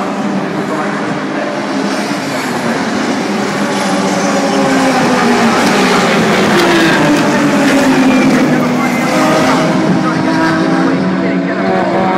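Classic touring cars' racing engines running hard as a group of cars passes the fence. Several engine notes shift in pitch over one another, and the sound builds to its loudest about seven to eight seconds in.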